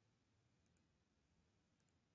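Near silence: the recording is effectively silent, as if gated between phrases of speech.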